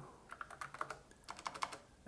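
Typing on a computer keyboard: two quick, faint runs of key clicks with a short pause between them, as a word is typed out and entered.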